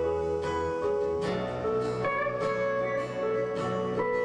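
Live band music led by a strummed acoustic guitar, with sustained pitched notes underneath. The deep bass notes drop out about a second in.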